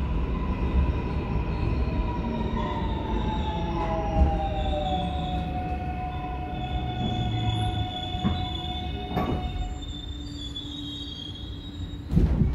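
Korail Bundang Line electric train braking into a station, heard inside the car. Its Toshiba IGBT VVVF inverter whine glides down in pitch as the train slows, over the rumble of the wheels on the track. Higher squealing tones come in over the second half, and there are two short knocks late on.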